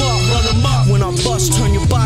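Hip-hop track: a beat with a steady low bass line and a rapped vocal over it.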